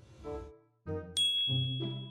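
Short logo jingle: a few quick musical notes, a brief break, then a bright chime-like ding about a second in that keeps ringing over lower notes.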